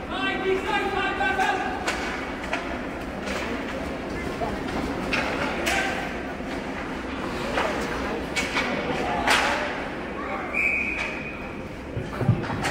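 Ice hockey play in a rink: scattered sharp clacks and thuds of sticks, puck and boards, with voices calling in the large, reverberant arena.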